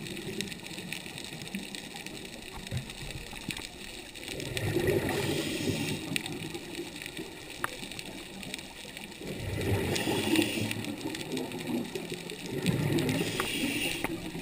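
Scuba regulator breathing heard underwater: bubbly gurgling bursts of exhaled air recur three times, about every four seconds, over a quieter steady background.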